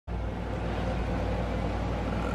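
A steady low hum with an even background hiss that stays unchanged throughout.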